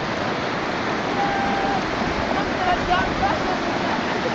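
Muddy floodwater rushing through a village street, a steady rush of water. Faint voices call out now and then in the middle.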